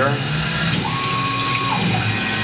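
Tormach PCNC 1100 CNC mill milling a pocket in 6061 aluminium with a 3/8-inch two-flute carbide end mill, with flood coolant splashing over the cut. A steady whine comes in for about a second in the middle, over the constant machine and coolant noise.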